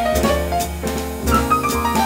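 Live jazz played on a Yamaha grand piano together with other instruments, a quick line of changing notes over a steady accompaniment.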